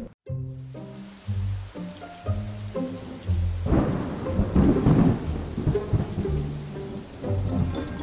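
Intro sting of held musical notes mixed with a thunderstorm sound effect: rain hiss and a thunder rumble that swells about three and a half seconds in and fades out by about six seconds.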